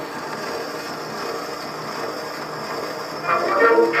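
Surface noise of an Edison Diamond Disc being played: a steady hiss and rumble from the stylus running in the groove. A little over three seconds in, the 1920s jazz band's brass comes in.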